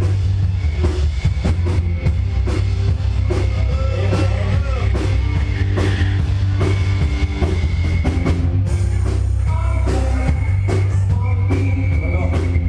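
Live rock band playing loudly: drum kit keeping a steady beat under bass and electric guitar.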